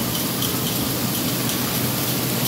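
Water pouring and splashing steadily from a splash-pad play structure.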